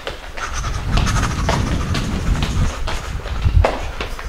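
Low rumbling handling noise from a handheld camera carried at a quick pace, with a string of sharp steps or knocks on a hard hallway floor.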